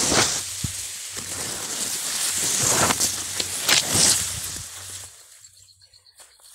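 Grass blades and dry stalks rustling and brushing right against the phone's microphone as it is pushed through the vegetation, with several louder crackly swishes. The rustling dies down about five seconds in.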